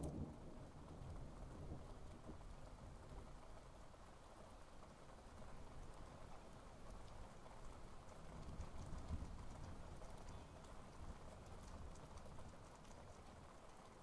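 Faint steady background hiss, near silence, with a slight swell a little past the middle.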